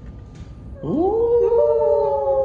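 A long drawn-out human vocal cry that starts about a second in, rises in pitch and then holds steady, with a second voice joining it.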